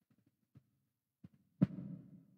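Low thumps and knocks: a few faint taps, then a sharp thump about a second and a half in, followed by a low rumbling hum.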